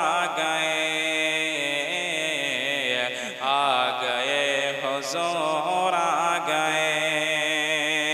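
A man singing a naat into a microphone, drawing out long wavering melodic lines, over a steady low drone.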